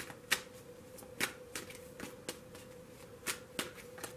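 Tarot deck being shuffled by hand: a run of irregular short card clicks, with a faint steady hum beneath.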